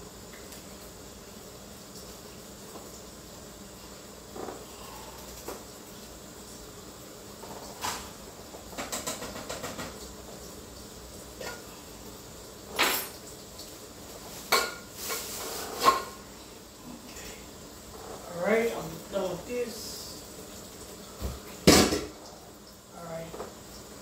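Scattered clinks and knocks of utensils, a can and containers being handled on a kitchen counter, with a quick rattle about nine seconds in and the loudest knock near the end. A few mumbled words come in shortly before that knock.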